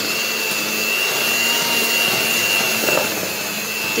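Electric hand mixer running steadily with a high whine, its beaters whisking cake batter in a plastic bowl.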